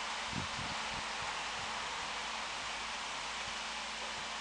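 Steady outdoor hiss and rustle, with a few soft low thumps between about half a second and a second and a half in.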